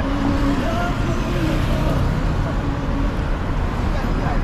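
Traffic on a busy city street, with cars running close by and faint voices of passers-by.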